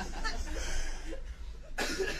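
A man laughing, with a short cough near the end.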